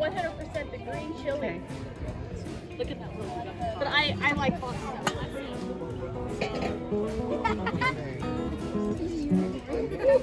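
Steel-string acoustic guitar being played, its notes ringing out, with people talking over it.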